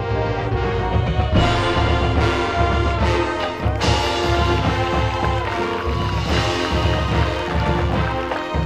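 High school marching band and front ensemble playing loud full-ensemble music, with sustained chords over a heavy low end. The music swells louder and brighter about a second and a half in.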